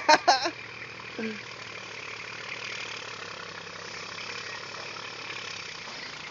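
Tractor engine running steadily while it moves a heavy shipping container, with a short laugh at the start.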